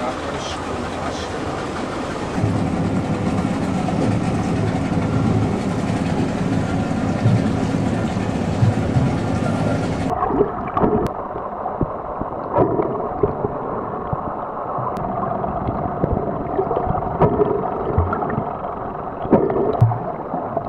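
Boat and water noise with a low steady rumble. About ten seconds in it cuts to muffled underwater sound from a submerged camera, with gurgling and scattered clicks.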